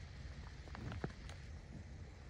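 Faint outdoor background: a low, steady rumble like wind on the microphone, with a few soft clicks or crunches about a second in.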